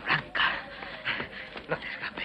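A person panting heavily in short, ragged breaths, about one every half second, with a few brief throaty voice sounds among them.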